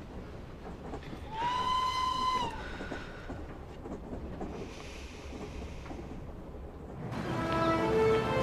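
A train running, a steady rumble as heard from inside a carriage, with its whistle blowing one steady note for about a second, about a second and a half in. Music begins near the end.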